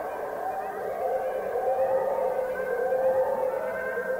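Experimental drone music: several sustained, siren-like tones layered together, wavering slowly in pitch and swelling a little louder through the middle.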